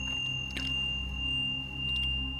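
A steady, high-pitched pure tone held without change over a low, steady drone; a fainter, higher tone drops out near the end.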